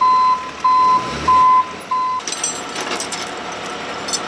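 Flatbed tow truck's warning beeper sounding four even single-pitch beeps, about one every half second or so, which stop a little past two seconds in, leaving a steady street noise.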